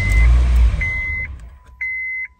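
2013 Honda Fit engine catching and running for well under a second, then dying away: a start-stall, the immobilizer shutting the engine down because the used PCM is not yet programmed to the car. A short high beep sounds about once a second.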